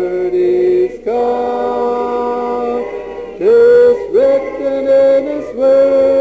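Several voices singing a hymn a cappella in harmony, with long held notes that change together every second or two.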